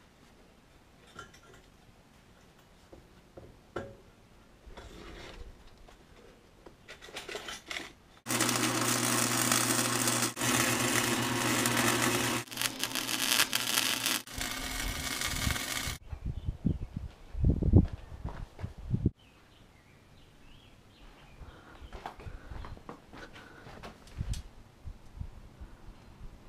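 Flux-core wire welder welding a steel boat stand: a loud crackling arc over the welder's steady hum, struck in several runs of a few seconds each, starting about a third of the way in and stopping past the middle. Quieter knocks and handling noises come before it, and a few low thumps follow.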